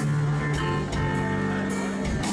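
Rock band playing: guitar and keyboard chords over a drum kit, with sharp drum and cymbal hits about twice a second.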